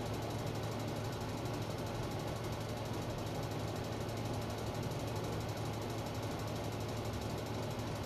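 A steady low machine hum, unchanging throughout, with a constant low drone and a faint even hiss above it.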